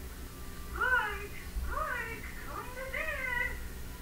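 A cat meowing three times, each meow rising and then falling in pitch.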